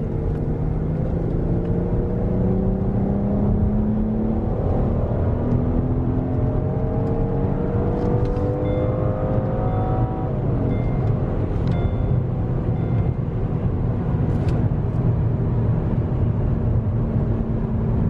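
A 2018 Hyundai Azera's non-turbo engine, heard from inside the cabin under hard acceleration in sport mode: its note rises, drops at a gear change about four seconds in, and climbs again. About ten seconds in, the throttle eases and the car settles into a steady highway cruise with engine and road noise.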